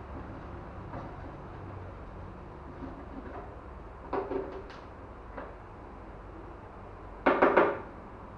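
Workbench handling sounds from hand work on an acoustic guitar: a few light clicks and knocks about four seconds in, then a quick run of about four sharp knocks near the end, over a steady low hum.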